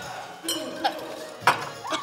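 A glass clinks about half a second in with a short, high ringing, and another sharp tap follows about a second later, amid voices.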